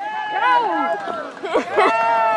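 Excited voices of onlookers calling out "go" and urging the rider on.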